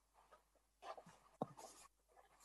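Near silence, with faint rustling and one sharp click about one and a half seconds in.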